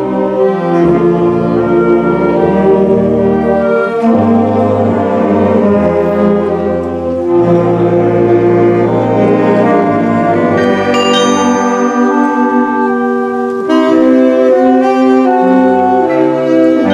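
Live ensemble music: a carillon's bronze bells struck from its baton keyboard, together with wind and brass instruments holding long low notes under the melody.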